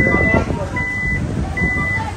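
Electronic warning beeps from a black Toyota Alphard van: a high steady beep repeated about every 0.8 seconds, four times, while its power doors stand open.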